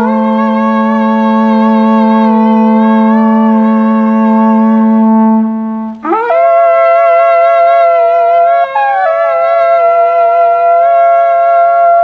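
Wooden highland shepherd's horns played together: one holds a steady low drone while another sounds long, wavering notes above it. About six seconds in, the drone stops and a new held note with a wobbling pitch begins.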